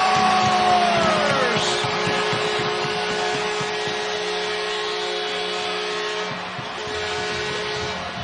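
Arena goal horn sounding a steady, loud multi-tone blast over a cheering crowd, signalling a home-team goal.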